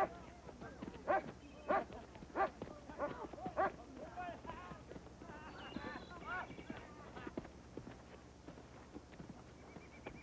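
Horses and voices of a camp on the move: a run of short, loud calls over the first four seconds, a higher wavering call near the middle, then quieter. A long wavering call begins near the end.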